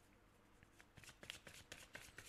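Faint shuffling of a deck of oracle cards: a quick run of soft card flicks that starts about a third of the way in.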